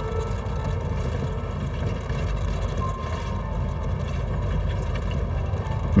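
Car engine and road noise heard from inside a moving vehicle: a steady low rumble.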